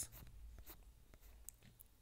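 Near silence: faint room tone with a few soft, brief clicks.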